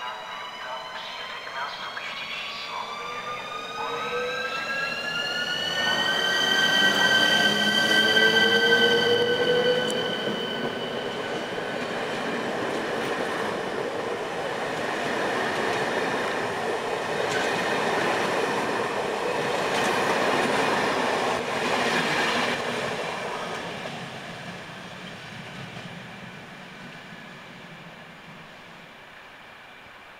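ČD class 380 (Škoda 109E) electric locomotive pulling away: its traction drive whines in several tones that rise in pitch over the first six seconds, then hold steady as it passes, loudest a couple of seconds later. The carriages then roll past with a steady wheel-on-rail rumble that fades away over the last several seconds.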